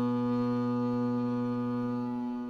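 Tenor viola da gamba bowing a long sustained double stop: two notes held steady together.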